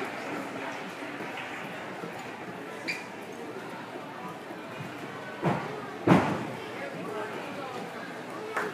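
Indistinct chatter of voices echoing in a large gym hall, with two sharp thumps about five and a half and six seconds in, the second the loudest.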